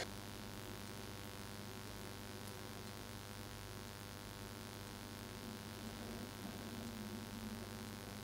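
Faint steady electrical hum over quiet room tone, with no distinct sounds of the brush on the paper.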